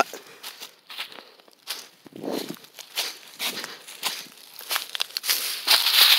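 Footsteps crunching through dry fallen leaves, then a louder rustle and crackle of leaves and twigs near the end as a hand digs into the leaf litter.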